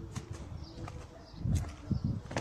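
A dove cooing faintly with a low, steady note, then a couple of soft thumps in the second half.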